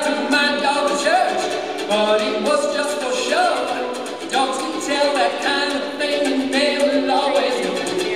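A man and a girl singing a folk song together, with a strummed ukulele behind them.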